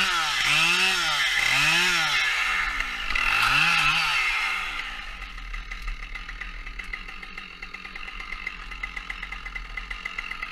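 Holzknecht HS 410 two-stroke chainsaw revved up and down in about four short bursts while cutting limbs off a felled spruce, then settling to a steady idle for the second half.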